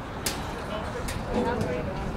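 Indistinct voices of people talking at a distance over steady outdoor background rumble, with a sharp click about a quarter second in and a couple of fainter ticks later.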